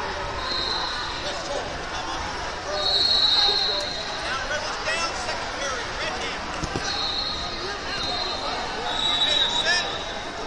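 Big-hall tournament din of crowd chatter, pierced by several short, steady, high-pitched blasts of referees' whistles from the mats, the loudest a few seconds in.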